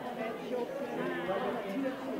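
Indistinct chatter of several overlapping voices: photographers calling out to someone posing for pictures.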